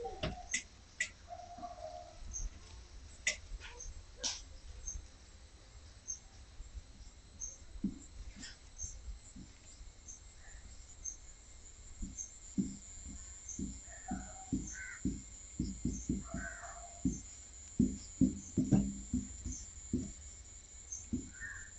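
Marker strokes and taps on a whiteboard as a caricature is sketched quickly, heard as short soft knocks that come thick and loudest in the second half. Birds call in the background, with a few caws and a high chirp repeating about once a second.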